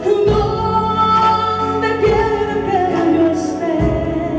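A woman singing held, gliding notes into a microphone over a live band, with a low beat striking about every second and three-quarters.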